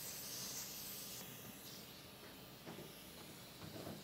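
Faint hiss of air at an ultrasound endoscope's control valves, strongest in the first second and then easing. The air-insufflation valve is sticking.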